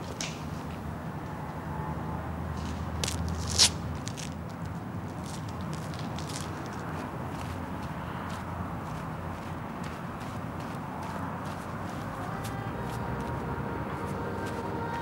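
Footsteps of a person walking over grass and earth, with scattered light clicks and one sharp snap about three and a half seconds in, over a steady low hum. Faint tones come in near the end.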